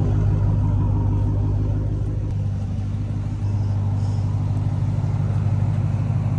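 Straight-piped 2023 Dodge Charger SRT Hellcat Redeye Jailbreak's supercharged 6.2-litre Hemi V8 idling steadily.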